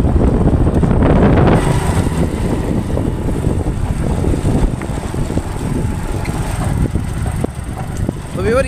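Motorcycle ride heard on the microphone: engine and wind rush as one steady noise, loudest for the first second and a half, then quieter.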